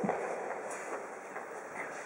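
Steady, echoing noise of a large indoor court between points, fading away over the two seconds.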